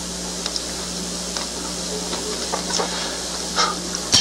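Steady hiss and a constant low hum from an old recording, with a few faint clicks.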